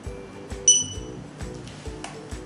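An Opticon OPR2001 barcode scanner gives one short, high good-read beep about two-thirds of a second in, as it reads a barcode in auto-trigger mode. Background music plays under it.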